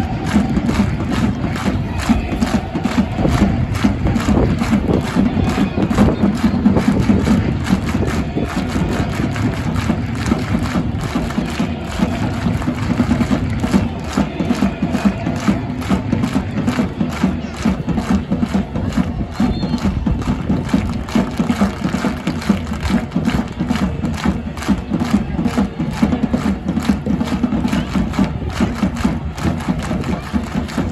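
A large crowd of football supporters clapping in unison, a steady, rhythmic hand-clap chant that keeps going throughout.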